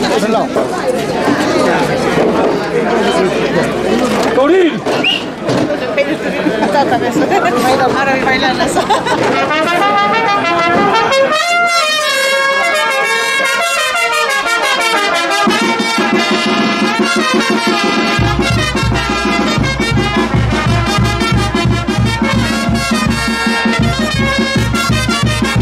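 Crowd chatter, then a brass band strikes up about ten seconds in: trumpets and trombones playing festive dance music, with more instruments joining and a strong steady low beat coming in near the end.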